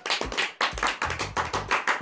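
A small group clapping by hand, with quick, uneven, overlapping claps.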